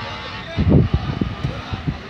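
Race cars' engines faint in the distance, under indistinct nearby voices and wind rumbling on the microphone.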